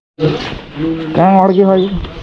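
Voices talking, then a person letting out a loud, drawn-out yell held on one pitch for under a second near the end.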